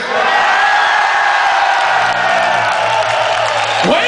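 Large concert crowd chanting "huevos con aceite" together, a long sustained mass of voices; a low steady hum from the stage joins about halfway through.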